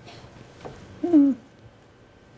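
A person's brief wordless voiced sound, a single held note that drops in pitch at its end, about a second in.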